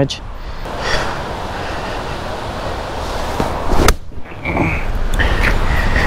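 A golf ball struck once off the tee with a pitching wedge: a single sharp click about four seconds in, over a steady background hiss of wind.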